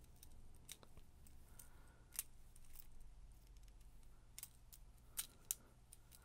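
Faint small metal clicks of split ring pliers and a steel split ring as the ring is worked onto a lure's hook eye, with the sharpest ticks about two seconds in and twice near the end.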